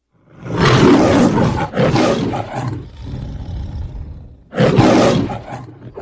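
The MGM lion logo roar: a lion roars loudly twice, the first roar in two pulses trailing off into lower growls, the second coming near the end and fading away.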